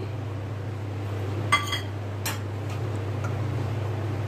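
A steel bowl clinks against the rim of a stainless-steel mixer jar as curd is poured in. There is one brief ring about one and a half seconds in and a sharp click shortly after, over a steady low hum.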